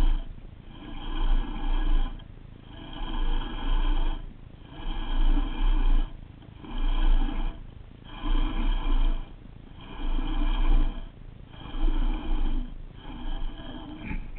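Baitcasting reel being cranked in short bursts, about one burst every second and a half, its gear noise carried through the rod to the camera.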